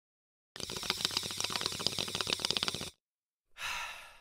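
A hit from a glass water pipe: about two seconds of bubbling and crackling as someone draws on it, then a short breathy exhale about three and a half seconds in.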